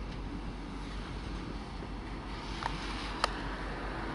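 Faint, steady low rumble of an approaching V/Line N class diesel locomotive-hauled train, with a single sharp click near the end.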